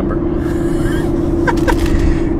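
Steady road noise and engine hum inside a moving car's cabin: a constant low rumble with a droning hum.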